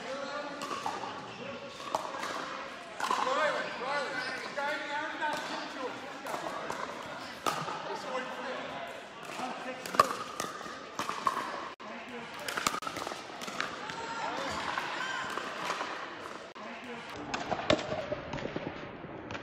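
Pickleball rally in a large indoor hall: sharp pops of paddles striking the plastic ball and the ball bouncing on the court, the loudest about ten seconds in, with voices in the background.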